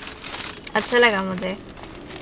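Clear plastic wrapping on a bouquet of roses crinkling as it is handled, with a short spoken sound about a second in.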